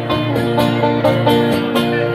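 Five-string banjo and acoustic guitar playing together live, a country-bluegrass song with a steady strummed and picked rhythm.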